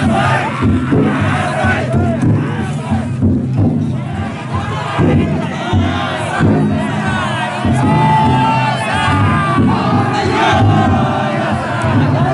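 Many men shouting a festival chant together around a yatai float, with held shouts over loud crowd noise.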